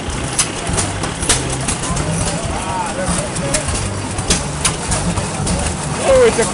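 Antique stationary gas engines running, a steady low drone broken by irregular sharp pops, with voices murmuring in the background.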